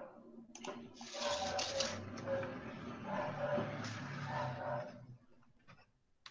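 Rustling and handling noise on a laptop or webcam microphone as someone moves close to it and reaches across it, lasting about four seconds before dying away, with faint voices in the background.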